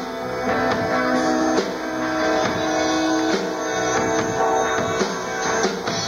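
Live rock band music: a guitar-led instrumental passage of strummed chords, with no singing.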